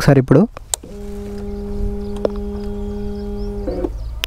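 A small electric motor, most likely the Bajaj Pulsar NS160's fuel pump priming with the ignition on, hums at one steady pitch for about three seconds, with a single click in the middle, then stops.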